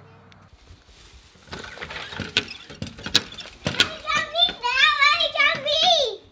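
Clicks and knocks of an apartment front door being unlocked and opened. From about four seconds in, a young child gives high-pitched, excited cries whose pitch wavers up and down.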